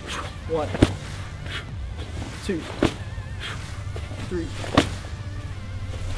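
Sandbag zercher cleans: a sharp hit from the sandbag on each rep, three times about two seconds apart, over background music and counting.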